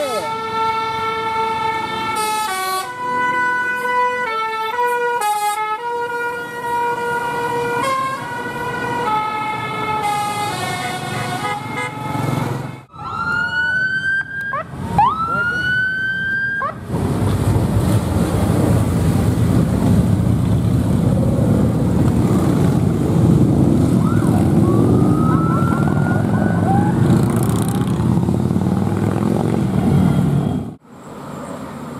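A bus's musical telolet (basuri) horn playing a stepped multi-note tune for about twelve seconds, followed by two rising siren-like whoops. Then a loud, steady rush of engine and road noise as a vehicle passes close.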